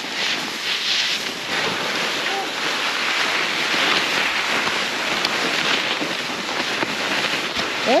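Skis skidding and scraping over firm, chopped-up snow as the skiers make short turns down a steep run, a steady hiss that swells and eases with the turns, mixed with wind rushing over the microphone.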